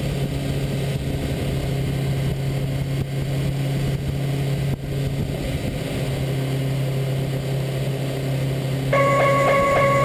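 Honda CBR1000RR Fireblade (SC59) inline-four engine running at a steady, unchanging speed under rushing wind noise. Music comes in near the end.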